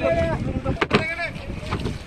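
Voices of people speaking over steady wind noise on the microphone, with one sharp knock just under a second in, the loudest sound.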